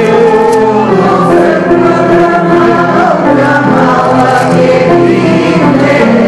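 A congregation singing a hymn together in sustained, held notes, with a man's voice among the singers.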